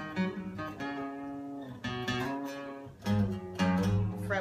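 Trendy 41-inch steel-string dreadnought acoustic guitar with a basswood body being played: notes and chords ring out and sustain, with fresh chords struck about two seconds in and again, louder, about three seconds in.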